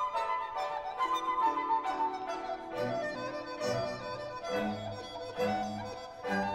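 Dizi, the Chinese bamboo flute, playing a melody over a Chinese orchestra, with cellos and double basses holding low notes beneath it.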